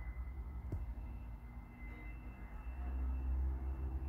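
Background room noise between words: a low steady rumble that grows a little louder in the second half, with a faint high whine, and one soft click about three-quarters of a second in.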